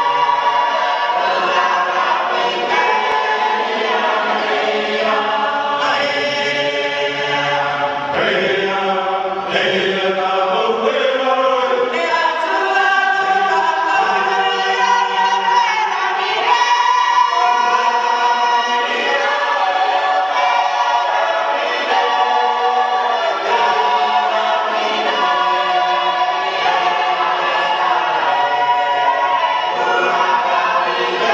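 A choir of many voices singing together in harmony, holding notes and moving between chords without a break.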